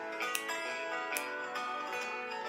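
Acoustic guitar music playing an instrumental passage without singing, with held notes and light, evenly spaced strokes.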